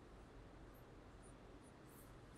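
Near silence, with faint strokes of a marker pen drawing on a whiteboard: a few soft, high-pitched squeaks.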